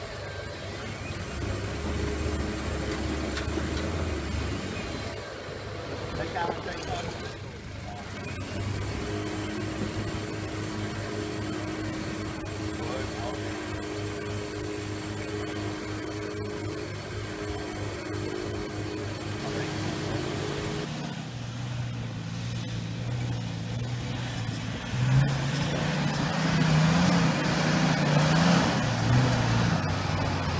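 Four-wheel-drive engine running at low revs as a Toyota Hilux crawls up a rocky track. The engine note changes a little past two-thirds of the way in, and a second 4x4's engine grows louder and closer over the last few seconds.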